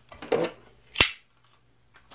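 A plastic zip tie being cut, one sharp snap about a second in.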